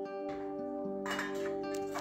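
Background instrumental music with steady held tones. From about a second in, a few light metallic clinks and scrapes as a steel plate is set down inside an aluminium pressure cooker.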